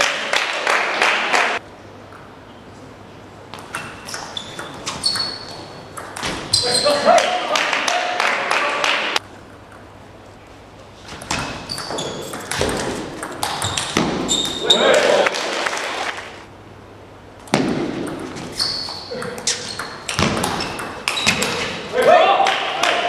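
Table tennis points being played: the celluloid ball clicking off the bats and the table in rapid, irregular rallies, echoing in a large hall, with bursts of spectators' voices between points.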